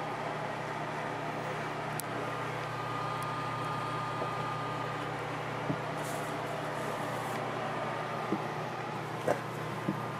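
Steady background hum and hiss, with a faint steady tone for a couple of seconds in the middle and a few small faint clicks.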